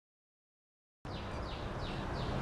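Silent for about the first second, then outdoor background noise with a bird calling: a quick series of short, high, falling chirps, about three a second.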